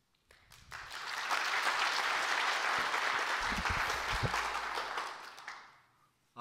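Audience applauding, swelling within the first second, holding steady and dying away near the end, with a few low thumps about halfway through.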